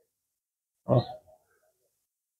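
A single short spoken "ó" ("look") from a man's voice about a second in; otherwise near silence.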